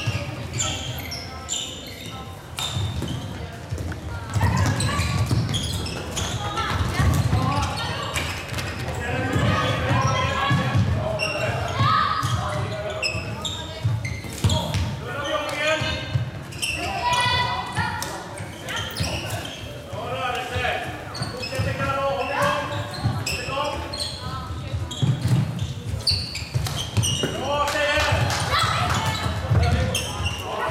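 Floorball being played in an echoing sports hall: sharp clacks of plastic sticks striking the ball, scattered through the play, with players calling out to each other now and then.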